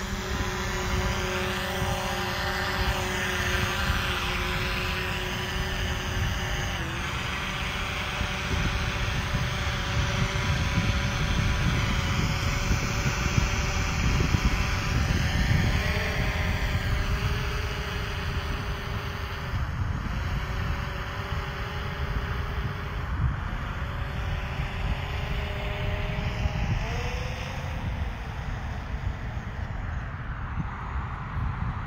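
Camera drone's propellers whining in several steady tones that step up and down in pitch every few seconds as it climbs and manoeuvres, over a low rumbling noise.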